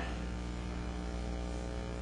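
Steady electrical mains hum, a low buzz with many evenly spaced overtones that holds unchanged throughout.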